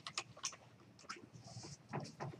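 Faint computer keyboard typing: a quick, irregular run of key clicks as a web address is typed.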